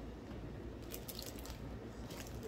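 Faint soft handling of food by hand while sliders are being topped, with a few light clicks about a second in, over a low steady hum.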